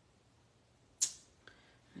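A single sharp plastic click about a second in, then a fainter tick: hard plastic stamping gear (clear acrylic stamp block, ink pad case) being put down or knocked on the craft mat.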